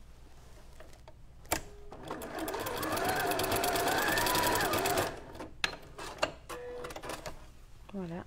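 Janome sewing machine running for about three seconds, stitching a short forward-and-back straight-stitch tack to lock a serged seam's thread tail. A sharp click comes just before it starts, and a few lighter clicks follow after it stops.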